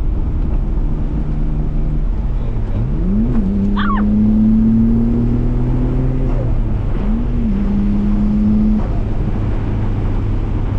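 Nissan Skyline R32 GT-R's RB26DETT twin-turbo straight-six heard from inside the cabin while driving. The engine note rises and drops quickly about three seconds in, climbs slowly for a few seconds, then rises and dips again about seven seconds in before holding steady.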